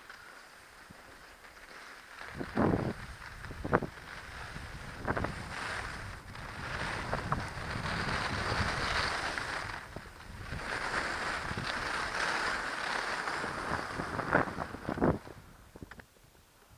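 Skis hissing and scraping over groomed snow on a downhill run, with wind buffeting the goggle camera's microphone. It starts quietly and builds about two seconds in, with a few sharp knocks along the way.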